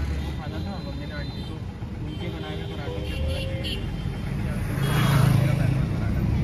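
Steady road and engine rumble heard from inside a moving car, with a louder swell of noise about five seconds in.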